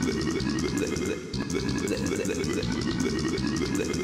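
Many offset copies of the same talking clip layered over each other, blurring into a dense, unintelligible churn of voices with a brief dip about a second in.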